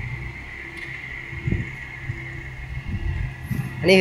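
A Toyota Corona sedan's engine running at idle while the car creeps slowly into a parking bay, a steady low hum with a couple of faint soft thumps about one and a half seconds in.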